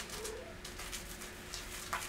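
A wooden-handled facial cleansing brush rubbing soap lather over the skin of a face, heard as a run of short, soft, scratchy brushing strokes, the loudest near the end. A brief, faint rising tone sounds about a quarter second in.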